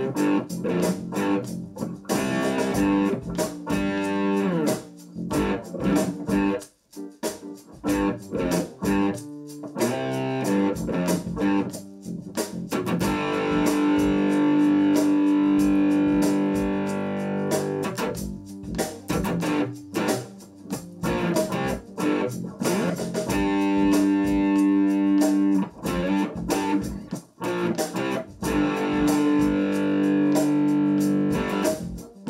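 Electric guitar played through a Roland Micro Cube amplifier: short, choppy staccato chord strums that stop sharply, alternating with longer chords left to ring, the longest about halfway through.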